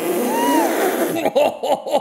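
A female singer's unaccompanied vocal run: a high note that bends up and down, then a quick wobbling run of swooping notes about four a second.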